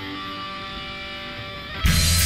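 Background guitar music with layered sustained notes. Just before the end it cuts abruptly to a much louder, heavier track with strong bass.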